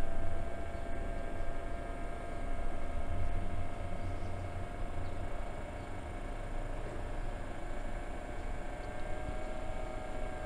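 A Chinese diesel parking heater's fan running just after start-up: a steady whine over a low rumble, edging up slightly in pitch near the end.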